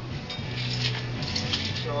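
A few light metallic clicks and clinks from a tape measure being picked up and its steel blade pulled out, over a steady low hum.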